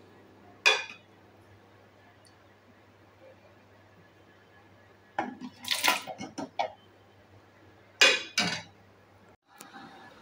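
Metal ladle clinking against a pot and a glass jar while banana mash is scooped into the jar: one clink about a second in, a quick cluster of clinks around the middle, and two more near the end.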